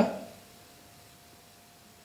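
A pause in a man's narration: his last word trails off, then quiet room tone with a faint steady hum.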